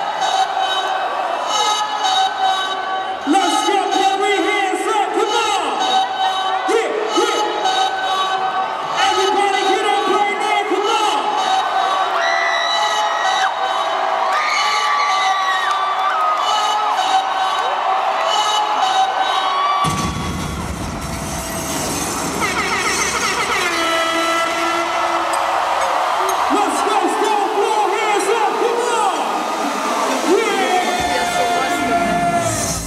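Loud live music over an arena PA with a voice over it and a crowd cheering; about twenty seconds in a heavy bass comes in and carries on.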